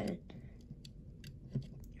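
A few faint, sharp clicks and taps of a small plastic flag stick against a die-cast toy truck as it is pushed into the truck's side mirror, with a slightly louder knock near the end.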